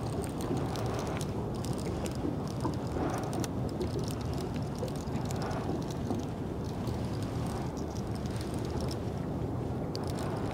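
Steady low rumble of wind buffeting the camera microphone, with faint irregular high ticks over it.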